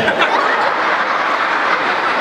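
Audience laughing, a steady wash of noise lasting the whole two seconds.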